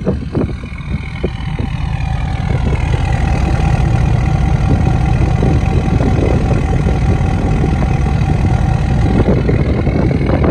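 Ford 6.7L Power Stroke V8 turbodiesel idling steadily, heard right at the dual exhaust tips. It grows louder over the first few seconds, then holds an even, low rumble.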